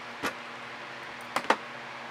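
Steady low background hum, with two short words spoken softly over it.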